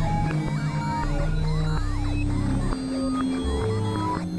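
Experimental electronic synthesizer music: held drone notes in the bass and middle shift pitch every second or so, under short gliding, warbling tones higher up.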